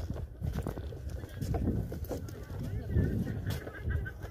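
Footsteps on a wooden boardwalk: irregular, dull low thuds as the walker moves along, with faint voices in the background.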